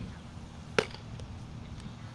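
A softball thrown down to second base pops into a leather fielder's glove: one sharp, loud catch a little under a second in, over a low steady outdoor rumble.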